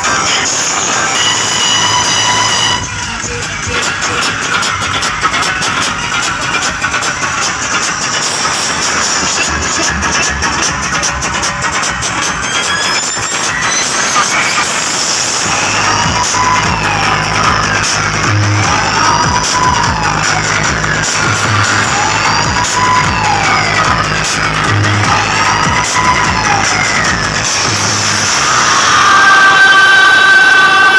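Loud DJ sound system playing dance music, changing character about three seconds in. In the second half, siren-like tones sweep up and down again and again over a steady heavy bass note.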